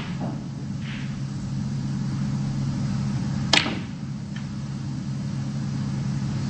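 Snooker shot: a single sharp click of the ball about three and a half seconds in, over a steady low hum.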